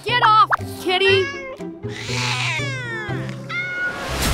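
A cartoon cat meowing several times, with bending and falling pitch, over light children's background music.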